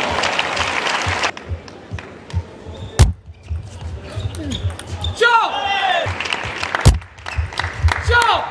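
Table tennis ball clicking off bats, table and floor, with sharp single strikes. A player gives a shout that falls in pitch a little after five seconds in.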